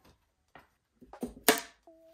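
BMW M10 engine's cylinder head being lifted off the block: a few small knocks, then one sharp metal clunk about one and a half seconds in, the loudest sound here.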